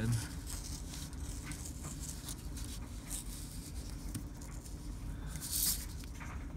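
Hobby knife blade scratching and dragging through printer paper on a cutting mat, in short irregular strokes with a louder rasping stroke near the end. The blade is dull, so it tears the paper rather than slicing it cleanly.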